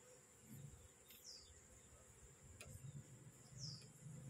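Very quiet: faint buzzing of Asian honey bees (Apis cerana) around a comb being handled, with a steady high whine of an insect in the background. Two short falling bird chirps, about a second in and near the end.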